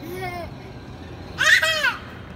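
A child's loud, high-pitched squeal near the end, after a brief lower vocal sound at the start, over a steady low rumble from a Mack truck driving simulator.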